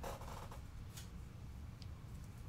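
1981 Topps cardboard football cards handled in the hand: a short rustling swish as a card slides off the stack at the start, then a light tick about a second in, over a low steady hum.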